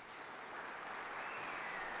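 Audience applause swelling over the first second, then holding steady, with a brief falling whistle near the end.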